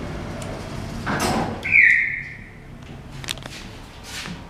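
Doors of a 2002 Otis traction elevator sliding shut after the door-close button is pressed: a rush of noise about a second in, then a short, loud high tone that falls slightly in pitch.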